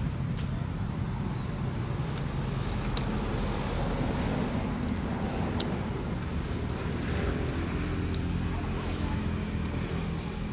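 Steady low outdoor rumble, with the fluttering of wind on the microphone. A motor's hum comes in about seven seconds in, and there are a few faint ticks.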